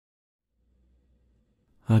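Near silence, then a man's voice starts speaking just before the end.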